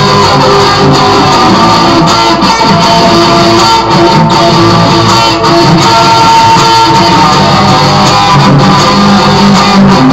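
Electric guitar playing continuously and loud, with no breaks.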